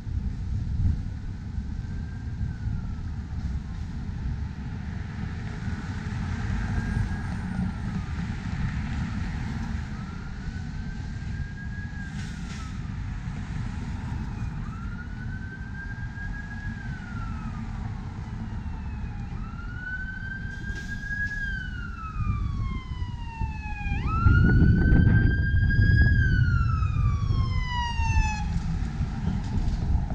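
An emergency vehicle's siren wailing in a slow rise and fall about every two and a half seconds over steady road traffic, growing louder as it approaches. It is loudest about three quarters of the way through, together with a loud rumble of a vehicle passing close.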